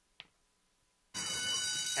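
Near silence, then about a second in the racetrack starting-gate bell rings loud and steady as the gate doors spring open, signalling the start of the horse race.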